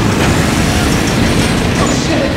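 Motorcycle engine running loud with a fast, rough firing rhythm, driving a spinning spiral-blade device.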